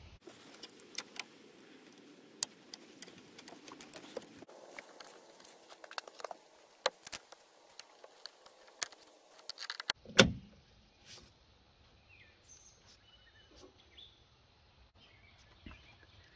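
Scattered light clicks and rattles of hands working radiator hose and cooler-line fittings in a truck's engine bay, with one louder knock about ten seconds in.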